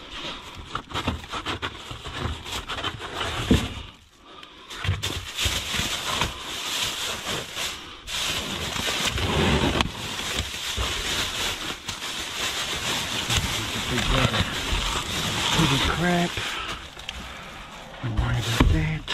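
Plastic bags and food packaging crinkling and rustling as gloved hands rummage through discarded groceries in a dumpster, a dense crackle that runs on with only brief lulls.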